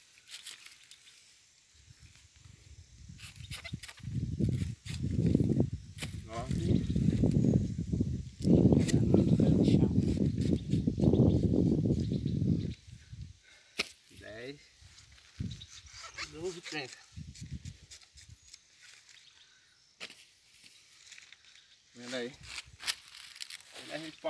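Hands of plantains being broken and cut off a bunch on the ground: scattered sharp snaps and clicks with rustling of banana leaves. From about two seconds in until about halfway through, a loud low rumble of noise on the microphone covers the handling.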